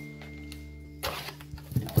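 Background music holding a steady chord; from about a second in, scissors cut and crinkle the plastic shrink wrap on a booster box, ending in a sharp rustle.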